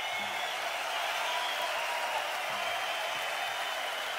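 Live rock concert audience applauding, a steady wash of clapping and crowd noise.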